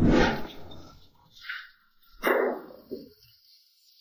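A man's voice calling out loudly, tailing off over the first second, then a sudden short loud cry a little past two seconds in.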